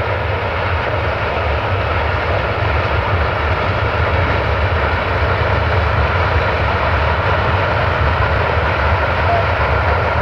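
A long freight train's open wagons rolling past on the rails, a loud, steady rumble of wheels and running gear.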